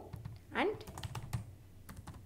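Typing on a computer keyboard: a quick, uneven run of keystroke clicks as a word is typed.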